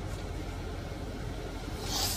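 Steady low rumble of a car with its engine running.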